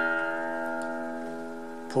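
Open low E (sixth) string of an acoustic guitar, plucked once and left ringing, slowly fading away.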